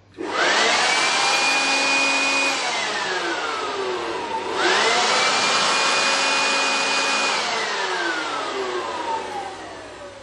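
Corded electric blower switched on twice: each time the motor's whine climbs quickly to a high steady pitch over a rush of air, holds for about two seconds, then slides down as the trigger is released and the motor spins down.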